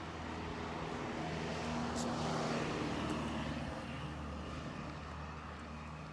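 A vehicle passing by outdoors: its noise swells over the first couple of seconds, peaks near the middle, then fades away.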